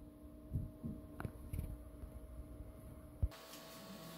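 Creality CR6-SE 3D printer running its automatic bed leveling: a faint steady hum of its fans and motors with a few soft knocks and one sharp click. About three seconds in, the hum cuts off to a quieter background.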